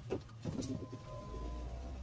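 A dove cooing faintly during a pause, with a low steady hum coming in about halfway through.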